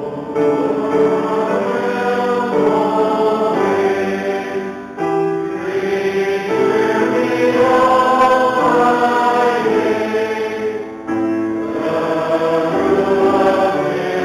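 Congregation singing a hymn together with keyboard accompaniment, the sung phrases breaking briefly about five seconds in and again near eleven seconds.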